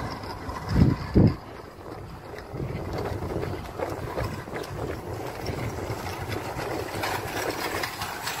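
Wind buffeting a phone's microphone outdoors: two heavy low gusts about a second in, then a steady rough rumble.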